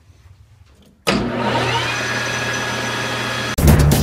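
Metal lathe switched on about a second in, its motor and spindle coming up to speed with a briefly rising whine, then running steadily. Near the end, louder music takes over.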